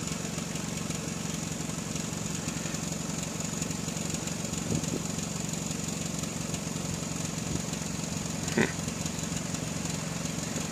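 Saturn Ion's engine idling steadily, heard from inside the cabin, with a short faint sound about eight and a half seconds in.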